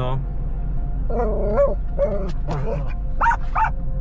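A small dog in a car giving a few short yips and whines, over a low steady hum.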